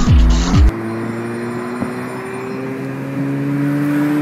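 Electronic dance music with falling bass-drum kicks breaks off under a second in. Then a car engine runs, heard from inside the cabin, its pitch rising slowly as the car accelerates, with a small step up near the end.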